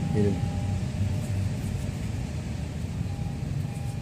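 Steady low rumble of distant road traffic.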